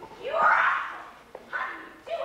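A person's voice: a loud call with a rising pitch lasting under a second, then a short click and a second, shorter vocal sound.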